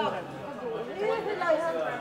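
Indistinct chatter of several people talking in the background, no single voice close or clear.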